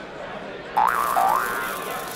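Cartoon spring "boing" sound effect: two quick wobbling pitch glides, going up and down, starting suddenly about three-quarters of a second in as spring-mounted cards pop up.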